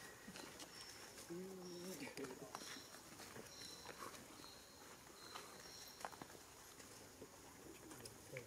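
Faint forest ambience. About a second and a half in there is one low, level coo lasting about half a second. Several short, high bird whistles sound over the first six seconds, with scattered light clicks.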